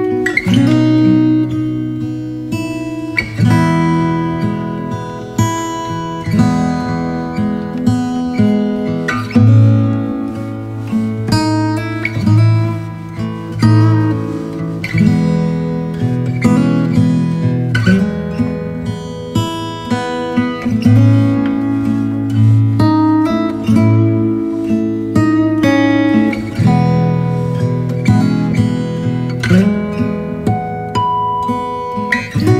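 Background music of acoustic guitar, plucked and strummed, with notes and chords changing every second or so.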